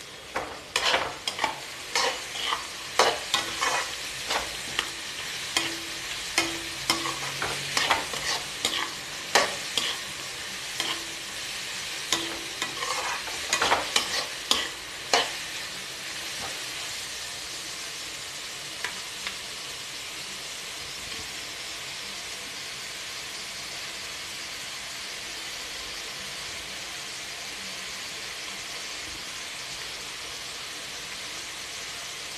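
A flat metal spatula scraping and clanking against a metal kadai as diced carrots, onion, beans and peas are stir-fried, over a steady sizzle. The stirring stops about halfway through, leaving only the vegetables sizzling.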